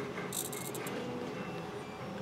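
Small hobby servo in the gripper of a 3D-printed robot arm, whirring briefly as it moves the gripper. It gives a faint high buzz about half a second in.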